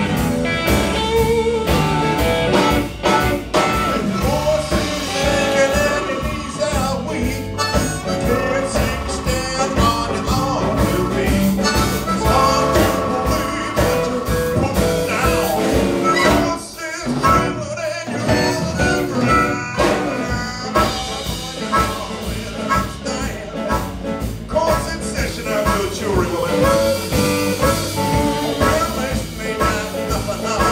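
Live blues-rock band playing: electric guitar over drum kit and bass guitar, steady and loud, with a brief drop in loudness about 17 seconds in.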